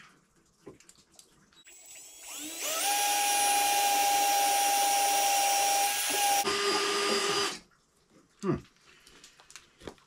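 Power drill drilling mounting holes for a chainsaw holder on a snowmobile. The drill spins up with a rising whine and runs steadily for about three and a half seconds. About six and a half seconds in it drops to a lower pitch, and it stops about a second later.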